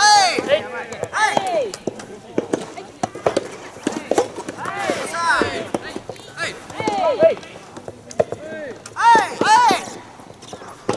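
Soft tennis players shouting short, rising-and-falling calls during a doubles rally, with sharp pops of the rubber ball off the rackets in between. The calls come about every one to two seconds, loudest near the end.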